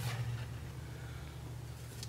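Quiet room tone: a steady low hum with faint background noise, and no distinct event.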